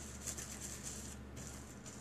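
Hands rubbing and pressing a thin plastic trash-bag sheet over wet paint, a faint rubbing and rustling of the plastic.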